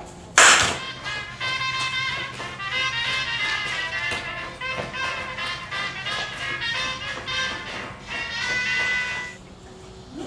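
A single loud hand clap about half a second in, followed by background music with a steady beat that stops shortly before the end.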